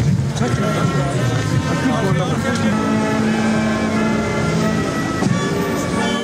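A brass band playing slow music in long held chords, over the background noise of a large crowd.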